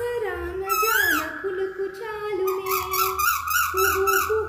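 A woman singing a Telugu song over a steady held note, with a high rising 'kuhu' call like a koel's about a second in and a fast warbling trill through the second half.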